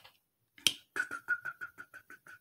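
One sharp click, then a quick, regular run of light clicks, about six a second, that fade near the end: the clicking of a device being worked, likely while scrolling through comments.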